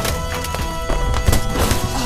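Background music: held steady tones over a quick run of knocking percussive hits.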